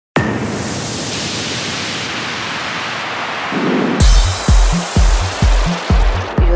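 Electronic dance music intro: a sudden burst of hissing noise that slowly darkens, then about four seconds in a four-on-the-floor kick drum and bass come in, about two beats a second.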